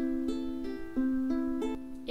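Ukulele fingerpicked in a slow, even arpeggio, one string at a time, each note ringing into the next. The notes step upward in pitch, and the pattern starts again from the lowest note about a second in.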